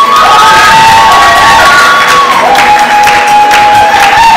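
Audience of children cheering and shrieking, with several long, high-pitched cries that overlap and rise at their start, very loud.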